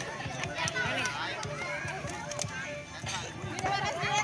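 Crowd of children and adults chattering and calling out at once, with scattered sharp clicks and background music.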